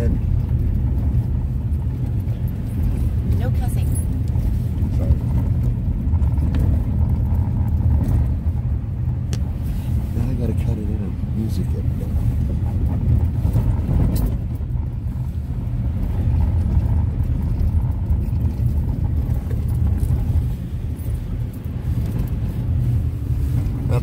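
Cabin noise of a Honda CR-V driving on a gravel road: a steady low rumble of the engine and tyres on the unpaved surface.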